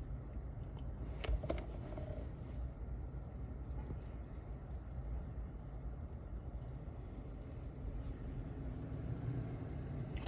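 Faint, steady low background rumble, with a couple of small clicks about a second and a half in.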